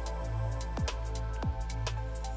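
Background music with drum hits over sustained chords and a steady low bass.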